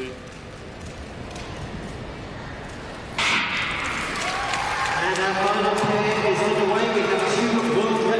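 A quiet indoor speed-skating hall, then the starting gun for a 5000 m race fires about three seconds in. Crowd noise and voices rise after it and keep up.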